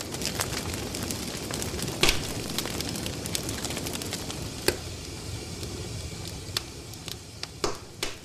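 Wood fire burning, a steady crackle with scattered sharp pops from the logs, the loudest about two seconds in and just before five seconds.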